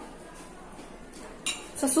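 A metal fork clinks once, sharply, against a plate about one and a half seconds in, as it is set down; a woman's voice starts just after.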